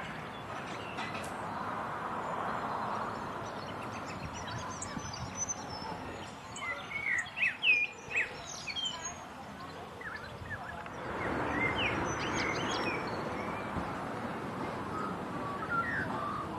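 Small birds chirping and calling in short notes, busiest and loudest about seven to nine seconds in, over steady outdoor background noise.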